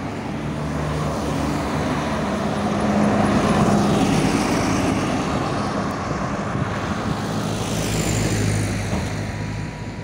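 Road traffic on a wide multi-lane city street: cars going by, the noise swelling loudest about three to four seconds in and again around eight seconds.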